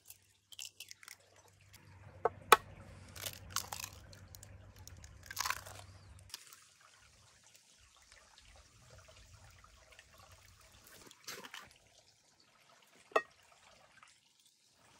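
Eggs cracked by hand over a plate of flour: a few sharp shell cracks and crunching of shell in the first half. Later comes a faint soft hiss of salt being poured onto the flour, and a couple of light clicks near the end.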